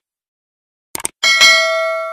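Mouse-click sound effect about a second in, then a notification-bell ding that rings out and slowly fades: the sound effects of a subscribe-button and bell animation.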